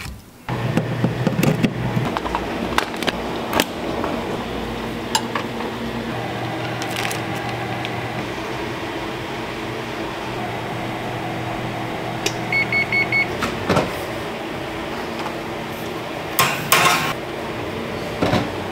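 Kitchen appliance sounds: a steady electrical hum, four quick high-pitched beeps from an appliance control panel about two-thirds of the way through, and scattered knocks with a burst of clatter near the end.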